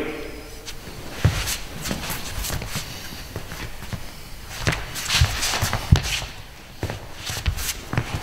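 Footsteps and shuffling shoes on a sports hall floor as two people step in and grapple, with several short sharp knocks scattered through.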